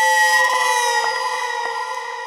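Background score of held synthesizer tones that slide slightly down in pitch, over a faint ticking pulse a little over twice a second.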